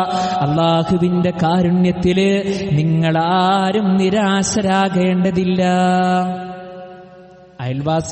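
A man's voice chanting Arabic in slow, melodic Quran-style recitation, holding long notes with ornamented turns. The chant trails off about six seconds in, and spoken words start just before the end.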